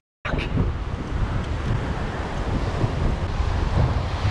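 Wind buffeting the microphone over surf washing onto a sandy beach, a steady rushing noise with a heavy low rumble. It begins after a split-second dropout to silence.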